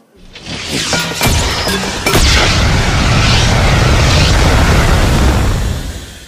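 Loud explosion-style disaster sound effect: a few sharp cracks in the first two seconds, then a heavy, sustained rumbling crash that fades out near the end.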